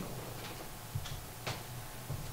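Two light clicks from a laptop's keys, about half a second apart, as the presentation is advanced to the next slide, over a faint low room hum.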